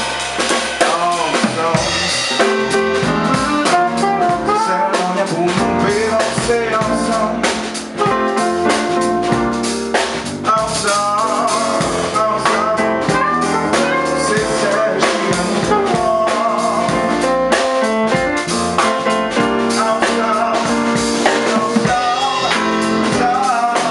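A live jazz quartet playing: piano, saxophone, electric bass and drum kit, with rimshots in the drumming.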